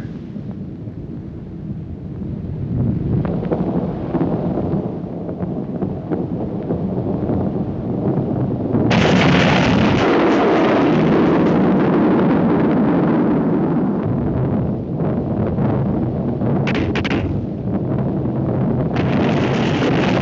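Cartoon sound effects of a flaming comet plunging toward earth: a low rumble that swells over several seconds, then about nine seconds in a sudden, loud, continuous crackling rush with explosions that runs on, dipping briefly near the end.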